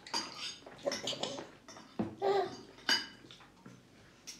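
Bowls clinking and clattering on high-chair trays as the babies handle them during a meal. There are several sharp knocks about a second apart, each with a brief ring, and a short pitched sound a little after two seconds.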